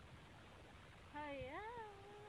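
A single drawn-out voice-like call, starting about halfway in. It dips, swoops up, then settles and holds a steady note.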